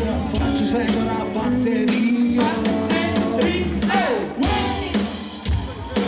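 Live rock band playing with a singer's voice over bass and drums, captured from the crowd.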